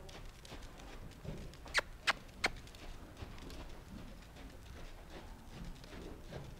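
Horse trotting on soft sand arena footing, its hoofbeats faint and dull, with three sharp clicks in quick succession about two seconds in.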